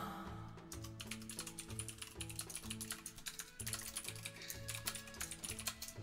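Fast typing on a computer keyboard, a steady run of key clicks, with quiet background music underneath.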